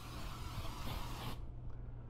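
Cooking spray hissing onto a metal baking pan in one burst of about a second and a half that stops abruptly, lightly greasing the pan.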